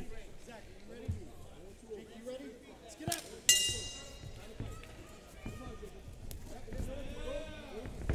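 Arena crowd and cornermen calling out, with one short, bright signal sounding about three and a half seconds in to mark the start of the round.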